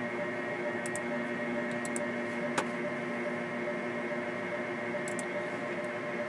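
Steady hum of running equipment fans, holding several steady tones, with one sharp click about two and a half seconds in.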